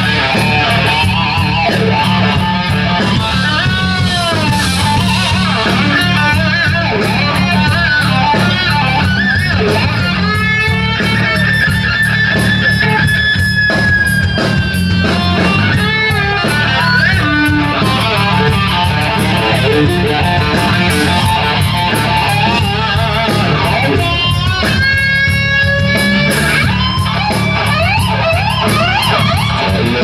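Heavy metal band playing live: an electric guitar lead with bent notes and long held high notes over bass guitar and drums.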